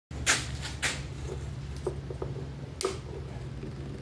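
Small electric motors under a water-filled plastic tub running with a steady low hum, driving the swirl in the water. Three sharp clicks cut through it, the first two within the first second and the third just before three seconds.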